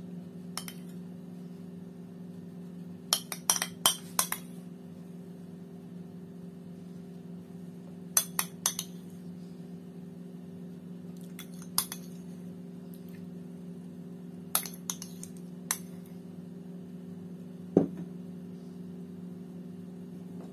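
A spoon clinking against dishware in short clusters of light taps a few seconds apart as sauce is spooned over food in a glass baking dish. A steady low hum runs underneath.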